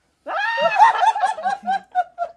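Laughter: a quick, rhythmic run of "ha-ha" pulses that breaks in suddenly about a quarter second in and carries on to the end.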